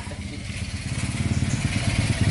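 A motorcycle engine running as it approaches, getting steadily louder.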